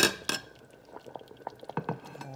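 Palm nut sauce simmering in a stainless pot, with scattered small bubbling pops. Two sharp knocks at the very start are the loudest sounds.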